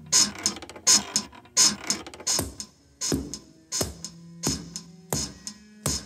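Bedsprings squeaking in a steady rhythm, about one stroke every 0.7 s, each squeak landing with the thwack of a carpet beater hitting a rug in time. A few low held notes sound under the beat.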